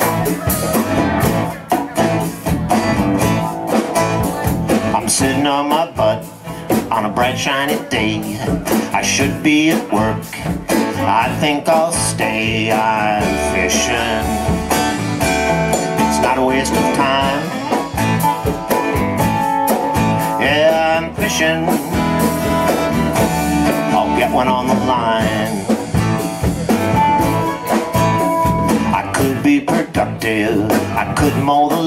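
A live blues-rock band playing through a PA, guitar to the fore over bass and drums, with no break in the music.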